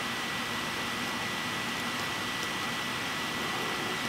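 Room tone: a steady hiss with a thin, steady high-pitched whine, and no other sound.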